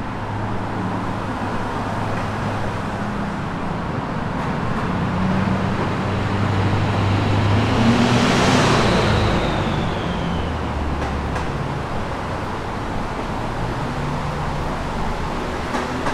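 Road traffic running steadily with low engine hums. One vehicle passes close about eight seconds in, louder as it goes by, with a high whine that falls in pitch as it passes.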